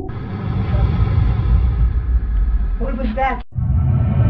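Dark ambient soundtrack drone: sustained tones over a heavy low rumble. A short wavering voice-like cry comes about three seconds in, followed by a sudden split-second dropout to silence.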